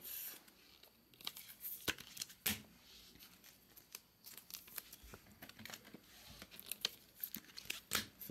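Crinkling of an opened foil trading-card pack wrapper and the rustle and tapping of cards being handled, in short irregular bursts with light clicks.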